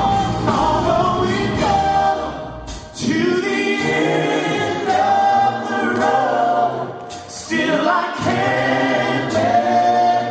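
Two male singers singing together live into microphones with a backing band. About three seconds in the band's low end drops out, leaving the voices nearly unaccompanied, and it comes back about eight seconds in.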